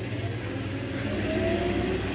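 An engine running steadily in the background, a low hum with a faint pitched tone above it.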